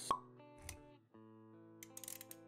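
Intro-animation sound effects over soft background music: a pop just after the start, a low thud about half a second later, then held synth-like notes.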